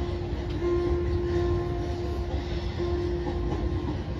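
Steady low rumble of a large crowd in an enclosed stadium, with one steady held musical tone over it and fainter higher tones coming and going.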